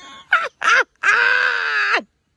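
A man's high-pitched excited scream, held about a second, after two short yelps. It is an outburst of overwhelmed joy.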